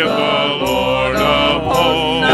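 A church men's singing group singing a gospel chorus in harmony, holding long, wavering notes, with a steady low accompaniment underneath that comes in about half a second in.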